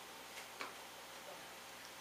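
Quiet room tone with two faint clicks about half a second in.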